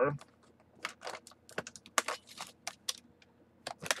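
Box cutter cutting through an action figure's plastic blister tray and cardboard backing: a run of irregular sharp clicks and crackles, several a second.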